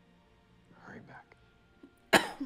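Near silence, with one short, quiet line of dialogue from the show about a second in.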